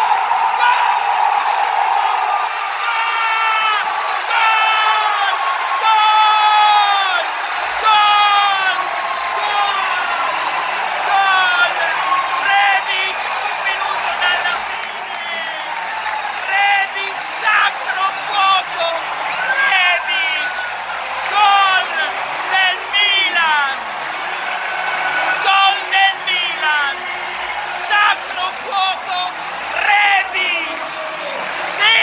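A man screaming and yelling in a long run of short, high-pitched shouts close to the microphone, celebrating a last-minute winning goal. Behind him a football stadium crowd is cheering.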